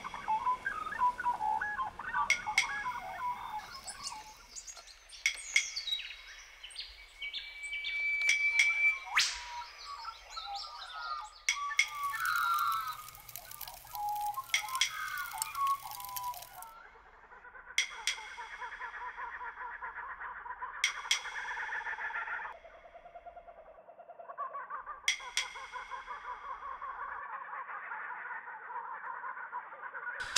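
Bird calls and chirps with sharp clicks scattered among them. In the later part, a steadier pulsing sound comes in two stretches, about four seconds each, with more clicks.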